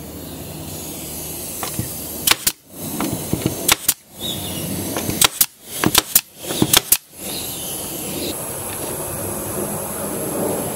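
A brad nailer fires nails into a wood fence strip on plywood, about six sharp double snaps between two and seven seconds in, over a steady background noise.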